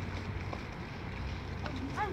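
Wind rumbling on the microphone outdoors: a steady low rumble, with a couple of faint clicks.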